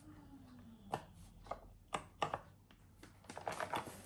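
Light taps and clacks of silicone candle molds and wax candles being handled on a metal baking tray, several sharp knocks in a row, then a short crackly rustle near the end.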